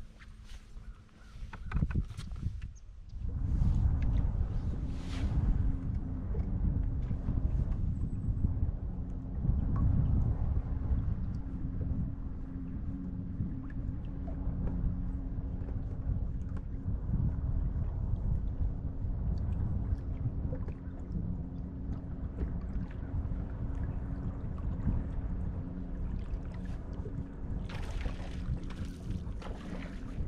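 Wind rumbling hard on the microphone aboard a bass boat, with a faint steady hum from the boat's electric trolling motor underneath; the wind picks up about three seconds in.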